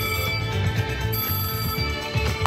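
Wicked Wheel Panda slot machine playing its bonus-round music: held electronic chime tones over a steady pulsing low beat.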